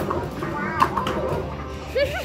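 Padded mallet hitting the pop-up frog targets of a Whacky Frog whack-a-mole arcade game, two sharp hits, the second a little under a second in, amid children's voices and arcade music.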